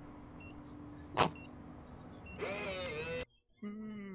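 Electronic keypad deadbolt being unlocked: faint short beeps, a sharp click about a second in, then the lock's motor whirring for under a second as the bolt draws back.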